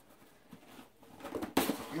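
Faint rustling and light clicks from handling a cardboard shipping box, then a sudden louder rustle about one and a half seconds in as the voice comes back.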